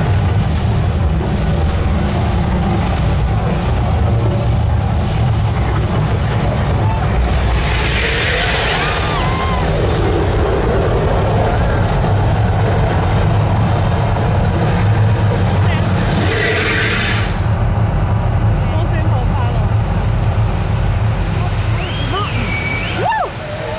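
The Mirage volcano show's eruption effects: a loud, deep rumble continues throughout, with two short whooshing bursts about eight and sixteen seconds in. The high hiss drops away a little past the middle as the flames die down.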